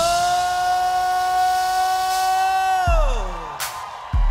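A rock band's held final note: one long steady pitched note that lasts almost three seconds, then slides down in pitch and fades, while the deep bass cuts out.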